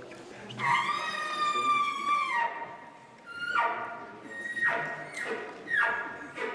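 A game call blown in a wildlife-calling contest: one long high-pitched note lasting nearly two seconds, then four short squeals that each fall sharply in pitch.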